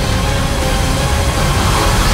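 Loud film-trailer score mixed with dense action sound effects and low rumble, swelling into a noisy rise near the end.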